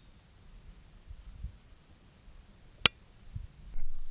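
Quiet background with a faint low rumble and a faint steady high whine, broken by one sharp click a little under three seconds in.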